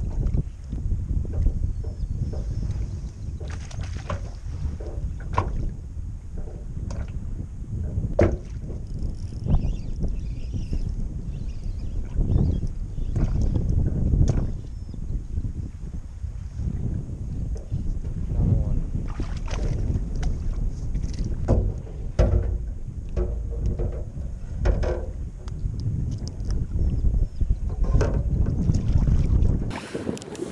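Wind buffeting the microphone over choppy water, with small waves lapping and knocking irregularly against the hull of a small boat.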